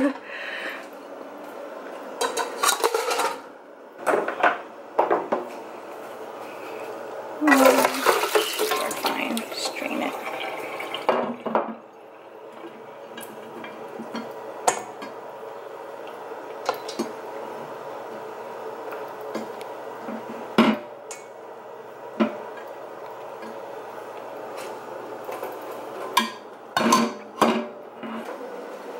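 Stainless steel colander and pot clinking and knocking in a kitchen sink. A tap runs for about four seconds as a dried Chinese herbal soup mix is rinsed in the colander.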